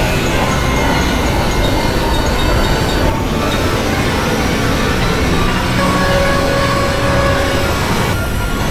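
Experimental electronic noise drone: a dense, steady rumbling wash heavy in the lows, with faint held tones drifting in and out, one holding for a couple of seconds in the second half.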